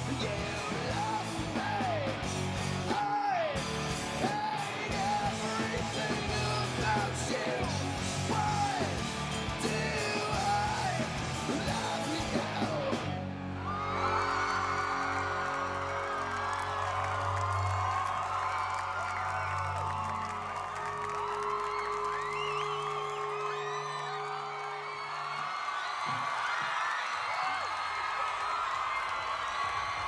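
Live rock band playing with a singer for the first half. About halfway through the sound changes abruptly to a large crowd cheering and yelling over a few long held notes.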